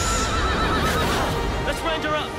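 Horse whinnying: one long wavering neigh in the first second or so, over a low rumble.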